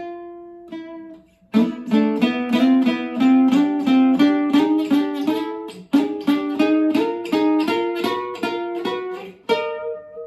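Acoustic guitar played fingerstyle, trying out an idea for a song's ending: one note rings for about a second, then a quick run of plucked notes follows with a short break about halfway, and a final note is struck near the end and left ringing.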